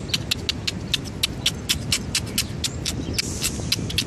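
A person making rapid mouth clicks, about five a second, to call squirrels in imitation of squirrel chatter. The squirrels take no notice.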